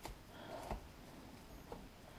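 Faint rustling and crinkling of plastic wrap as hands press it down over a ball of dough, with a couple of soft clicks.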